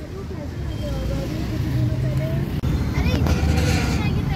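Steady low rumble of a Honda car's engine and road noise heard from inside the cabin as it moves slowly in traffic, with faint voices in the background.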